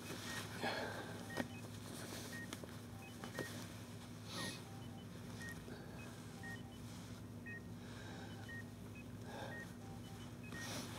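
Hospital bedside patient monitor beeping: short, high beeps repeating at a steady pace, about one a second, over a low steady hum and some soft rustling.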